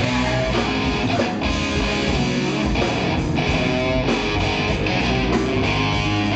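Live rock band playing loud, with strummed electric guitars over a drum kit.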